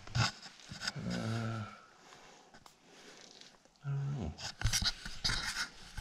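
A man's drawn-out hesitant "uh" and, a few seconds later, a short low vocal sound, with scattered light clicks and scrapes of hands handling parts; in between it is almost quiet for about two seconds.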